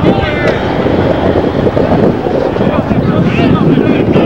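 Wind buffeting the camcorder microphone in a loud, rough rumble, with shouting voices breaking through near the start and again about three seconds in.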